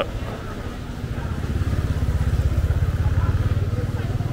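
A small motor scooter passing close by. Its engine grows louder to a peak about two and a half seconds in, then eases off a little.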